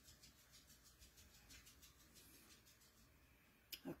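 Near silence: faint room tone, with one brief faint click just before the end.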